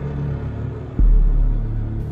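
Cinematic sound-design rumble: a low drone, then a sudden deep bass boom about a second in that holds as a heavy low rumble.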